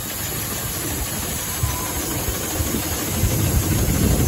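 Steam showman's road locomotive running while standing, with a low irregular rumble and a steady hiss.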